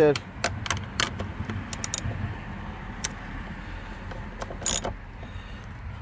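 Socket ratchet clicking in short, irregular strokes as it runs down the mounting bolt of a power steering reservoir, with a louder clink near the end.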